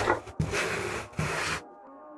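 Hand plane cutting shavings from the edge of a wooden board: a rasping stroke ends just after the start, then a second, longer stroke lasts about a second, each the hiss of the blade slicing wood. The strokes stop shortly before the end.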